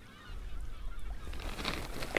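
A flock of birds calling in the distance, many short overlapping calls over wind rumble on the microphone, with a rushing noise swelling near the end.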